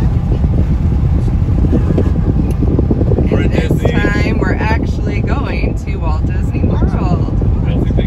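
Steady low road and engine rumble inside a moving car's cabin, with people's voices over it from about three seconds in.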